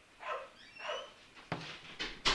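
A puppy whining in a few short, faint cries, with a knock about one and a half seconds in.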